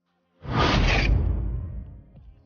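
A whoosh transition sound effect: a sudden loud rush of noise with a deep rumble underneath, starting about half a second in and fading away over about a second and a half.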